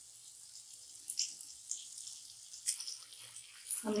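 Faint sizzling of onion-tomato masala frying in a pan, with a few soft taps as boiled egg pieces are set into it.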